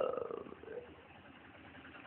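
A pause in a man's speech: low, steady room noise, with a faint trailing voice sound in the first half second.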